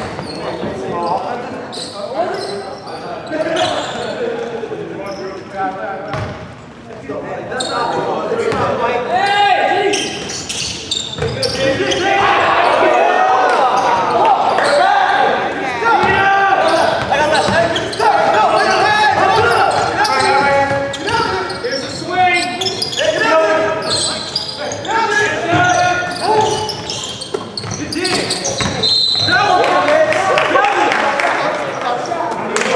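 Basketball bouncing on a wooden gym court during play, with players' indistinct voices and calls. Everything echoes in a large gymnasium.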